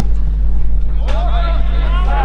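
Several voices of spectators and players shouting over one another, starting about a second in, over a steady low rumble.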